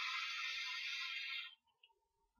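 A long draw on a vape: a steady hiss of air pulled through the atomizer as the coil fires, stopping about one and a half seconds in.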